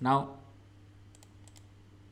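A few faint computer mouse clicks about a second in, over a low steady hum.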